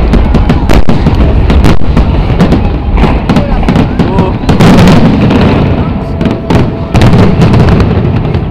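Fireworks finale barrage: aerial shells bursting in rapid succession, many loud sharp cracks and booms overlapping. The cracks thin out and get quieter near the end.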